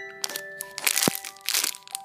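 Background music of steady held notes, over the crinkling of a clear plastic bag as the squishy toy inside it is squeezed and handled, in a few short bursts, the loudest about a second in.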